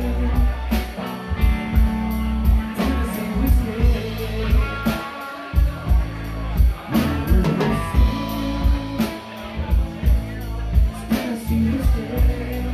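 A live rock band playing loudly: a Pearl drum kit keeping a steady beat under electric guitar, with a man singing.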